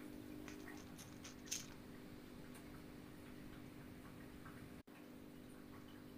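Near silence: faint room tone with a steady low hum and a few faint small clicks in the first two seconds.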